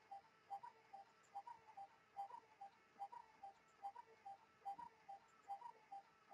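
Faint, regular tick-tock: soft ticks about two and a half a second, alternating between two slightly different pitches, like a ticking clock.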